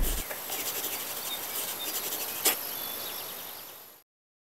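Logo sting sound effect: the tail of a loud hit dies away at the start, then a high, faintly crackling shimmer. One sharp click comes about two and a half seconds in, and the shimmer fades out near the end.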